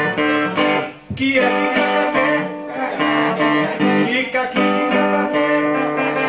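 Acoustic guitar playing an instrumental passage between verses of a song, with a higher melody line above it. The music breaks off briefly about a second in, then picks up again.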